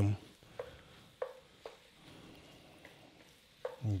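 Wooden spoon stirring a thick vegetable-and-roux mixture in an enameled cast-iron Dutch oven, with a few short knocks of the spoon against the pot and a faint sizzle underneath.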